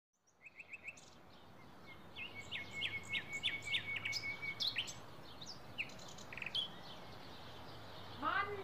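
Several birds chirping and singing over a faint steady background hum. It fades in from silence with a quick run of short chirps, then a held whistled note crossed by sharp chirps, and scattered calls after that.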